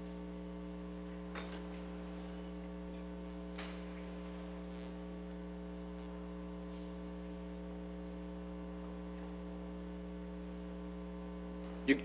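Steady low electrical hum on the meeting's audio feed, with two faint clicks in the first few seconds.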